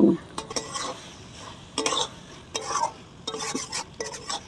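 Flat metal spatula stirring and scraping a thick mushroom masala around an iron karahi in a series of uneven strokes, with the mix frying in a faint sizzle.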